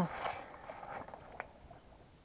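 Faint rustling handling noise, fading away, with one small sharp click about one and a half seconds in.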